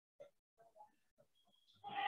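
Near silence with a few faint taps of a marker writing on a whiteboard. Just before the end a louder pitched sound begins.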